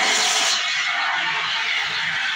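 CO2 fire extinguisher discharging in a loud, steady hiss, strongest in the first half second, its valve wheel opened to spray a tray fire.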